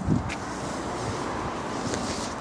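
Steady rushing noise of wind on the microphone, with no distinct knocks or clicks.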